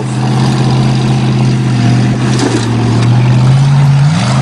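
Oldsmobile sedan engine running open through an exhaust cut off after the Y-pipe, held at steady high revs under full load as the car climbs a steep dirt hill.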